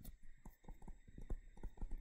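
Stylus tapping and stroking on a tablet screen while handwriting words, a quick, irregular run of faint ticks.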